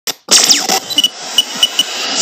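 Sound-effects sting for an animated logo intro: a short hit, then a louder one with a quickly falling zip, followed by several short, bright pings during the second second.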